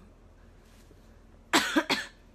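A young woman coughs twice in quick succession into her hand, near the end.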